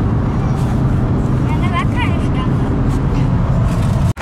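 Steady low rumble of a car's engine and road noise heard inside the cabin while driving. A short high voice comes briefly about a second and a half in.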